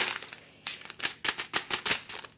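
Small plastic zip bags of diamond-painting resin diamonds being handled, making crinkling and a quick run of clicks that grows dense after about half a second.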